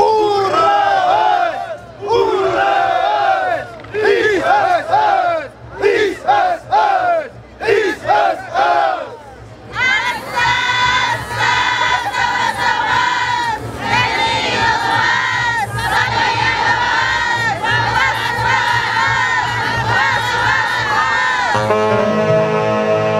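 A large group shouting high-pitched calls together, with no band playing. For the first half the shouts come in short bursts with pauses between them; then they swell into a dense, continuous chorus of yells. Instrumental music comes back in just at the end.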